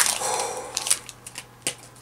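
Foil wrapper of a Pokémon booster pack crinkling as the stack of cards is slid out of it. The crinkle is loudest at the start and fades within about a second, followed by a few light clicks of card against card.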